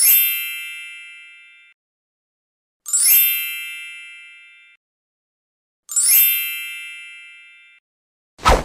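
A bright chime sound effect sounds three times, about three seconds apart. Each starts with a glittering shimmer and then rings on a chord of clear tones that fades out over nearly two seconds.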